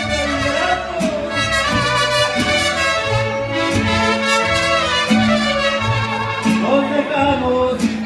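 Live mariachi band playing a ranchera: violins and a melody line over strummed guitars and a stepping plucked bass.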